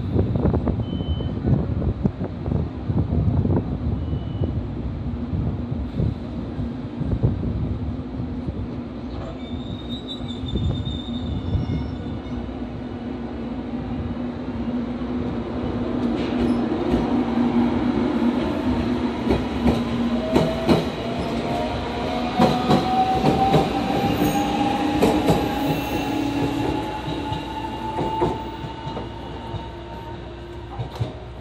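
JR Kyushu 813 series electric multiple unit pulling away from a station: a low rumble, then a whine that rises slowly in pitch as the train gathers speed, with wheels clicking over rail joints in the second half.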